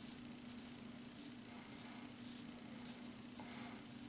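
Faint scraping of a Scottish Razor Co custom 8/8 straight razor cutting through lathered beard stubble, in short strokes about two a second.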